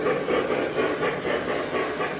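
K-Line O gauge Pennsylvania K4 model steam locomotive running with its sound system chuffing about three times a second, through an upgraded speaker, along with the rolling noise of the train on the track.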